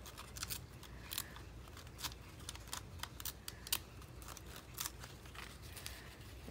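Small craft scissors snipping through glossy magazine paper in a string of faint, irregular cuts as a picture is cut out along its edge.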